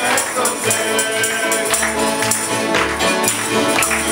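Acoustic old-time string band playing at a steady tempo: strummed acoustic guitars and a fiddle over an upright bass.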